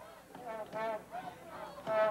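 Several short, high-pitched shouts from a distant voice, heard faintly.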